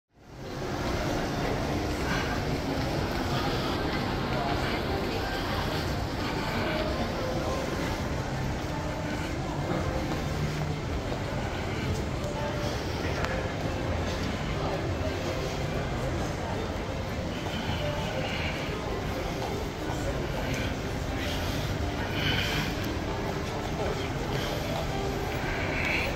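Shopping-mall indoor ambience: a steady low hum with indistinct voices of passers-by. It fades in from silence at the start.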